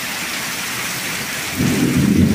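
Heavy rain falling steadily in a constant hiss. About one and a half seconds in, a low rumble swells up under the rain.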